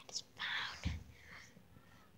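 A person whispering, a short breathy burst, cut by a dull thump on the microphone just under a second in.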